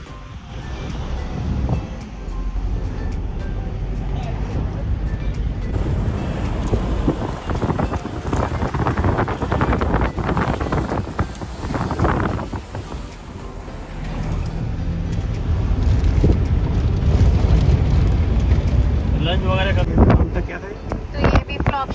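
Steady low rumble of road and engine noise inside a moving car's cabin, with background music and some indistinct voices over it.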